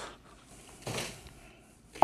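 Mostly quiet, with a soft brushing sound about a second in, then a light knock near the end as a chef's knife meets a leek on a plastic cutting board.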